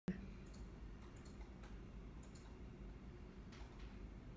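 Fingers tapping on a smartphone's glass touchscreen while typing: a scatter of faint, light, irregular clicks, several in quick succession, over a low steady hum.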